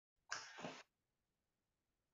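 A short breathy sound from a person, in two quick parts lasting about half a second, a little after the start.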